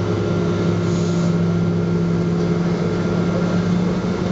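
Steady cabin drone of a Boeing 777-236 taxiing, its General Electric GE90-85B turbofans at idle, heard from inside the cabin. It is a constant hum with several held tones.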